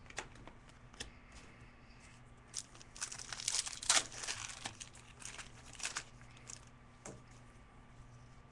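Foil trading-card pack wrappers crinkling and tearing as packs are opened by hand, in faint, scattered rustles that are busiest around the middle.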